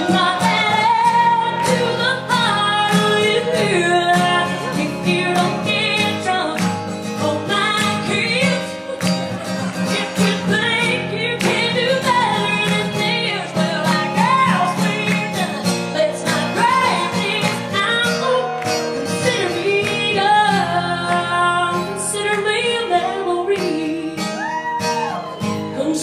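A woman singing a country ballad live over band accompaniment, holding long notes with a wavering vibrato.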